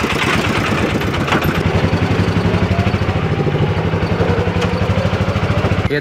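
A small vehicle engine running steadily close by, with a fast, even putter and a pitch that holds level.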